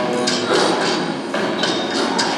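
Percussive hits with ringing tones from a documentary's opening title music, played loud through the hall's loudspeakers. There is a strike about a third of a second in and a pair about a second and a half in.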